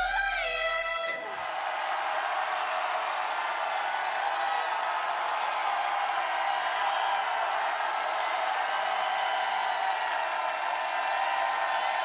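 The K-pop song's last sung note and bass end about a second in, giving way to a studio audience cheering steadily, a high-pitched crowd sound that holds at an even level.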